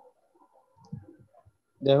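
A pause in a man's speech filled with faint short clicks and small noises. His voice starts again near the end.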